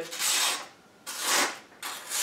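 A sheet of paper slicing against the sharpened edge of a Barong machete in push cuts, a dry rasping hiss with each stroke: two strokes, with a third starting near the end. This is a sharpness test, the edge cutting into the paper rather than sliding off it.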